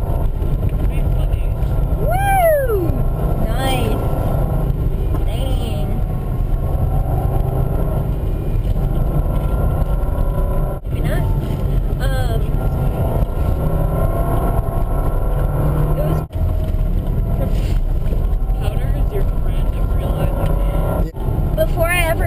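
Interior noise of a Subaru Impreza 2.5TS driving on a snow-covered road: a steady, loud low drone of engine and tyres, heard from inside the cabin.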